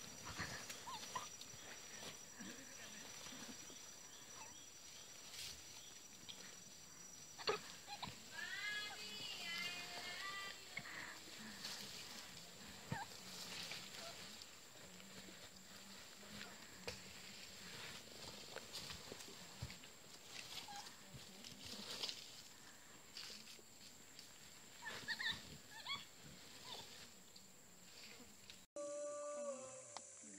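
Faint tropical forest ambience with a steady high-pitched whine, scattered rustles and knocks, and a quick run of rising chirping calls about nine seconds in, with a few more chirps near the end.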